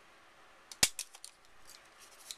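Handheld plier-type hole punch squeezed through a paper flap: one sharp snap a little under a second in, followed by a few smaller clicks as the punch jaws open again.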